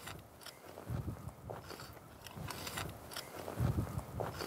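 A spading fork working loose garden soil: the tines are pushed a few inches in and lifted, with soft crunching of crumbling earth and a couple of low thumps, one about a second in and one near the end.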